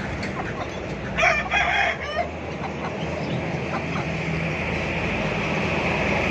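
A domestic fowl calls once, loudly, about a second in: a pitched call just under a second long, broken into a few parts. Under it runs a steady low rumble, and a hiss builds toward the end.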